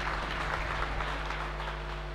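Congregation applauding: a steady, even patter of clapping over a low, steady hum.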